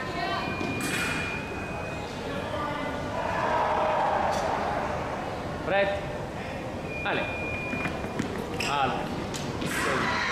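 Background voices and chatter in a large hall. Twice a steady, single-pitched electronic beep sounds, about a second and a half long near the start and under a second long about seven seconds in.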